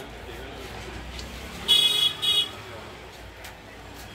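A vehicle horn sounds two short honks in quick succession, the first a little longer than the second, over steady street noise.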